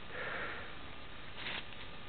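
A short sniff or breath close to the microphone in the first half-second, then a steady low hiss.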